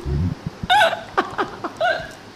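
Two people laughing hard together in short, gasping bursts, with high-pitched squeals of laughter a little under a second in and again near the end.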